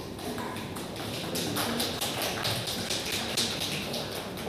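A run of irregular sharp taps or knocks, several a second, in a large hall.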